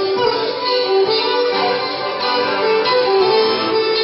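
Instrumental passage of Dodecanese folk music: violin carrying the melody over santouri (hammered dulcimer) and accordion, with no singing.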